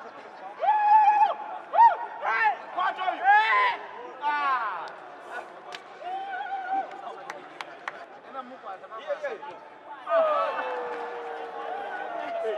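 Several voices shouting and calling out in loud, sharply rising and falling cries, with a few sharp clicks in the middle and a long falling shout near the end.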